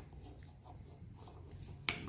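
Low, steady room hum with one sharp click shortly before the end.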